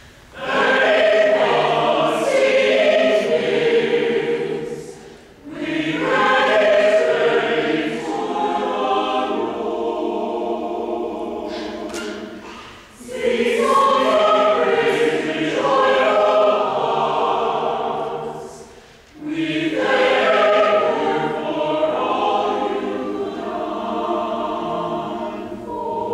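Mixed choir of women's and men's voices singing, in four phrases, each broken off by a short pause for breath.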